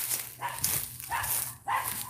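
A dog barking, a few short barks.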